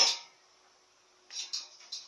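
A single sharp knock from the homemade steel-frame exercise bench as it is lowered and set down, fading quickly. A short soft rustle or breath follows about a second and a half later.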